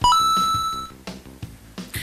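An edited-in chime sound effect marking an on-screen price: a brief lower note that jumps at once to a higher note, held for just under a second before cutting off, over soft background music.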